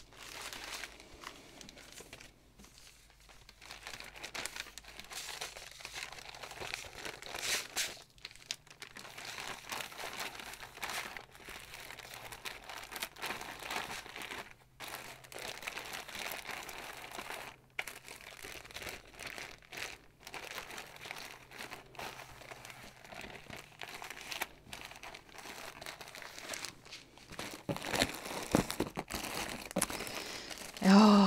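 Clear plastic zip bags of cross-stitch floss and bead packets crinkling as they are handled and moved about, in irregular bursts of rustling. A few low knocks near the end.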